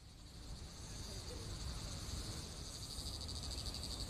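Insects chirring steadily in a high, finely pulsing band, fading in over the first second, with a faint low rumble of outdoor background underneath.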